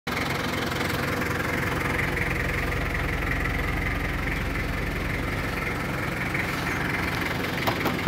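Mitsubishi Kuda MPV engine idling steadily.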